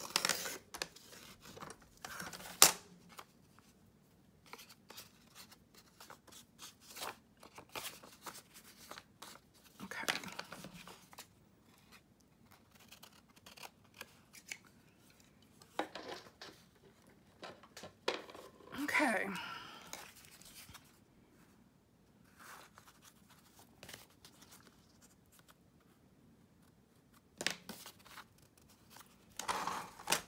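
Sliding-blade paper trimmer cutting a strip off a sheet of paper, ending in one sharp click. After that comes intermittent rustling as paper and card are handled on a cutting mat.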